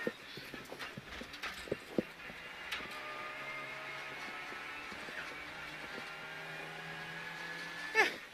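Renault Clio Rally5's turbocharged 1.3-litre four-cylinder engine heard from inside the cabin, running at a steady, unchanging pitch. A few sharp knocks from the car sound in the first two seconds.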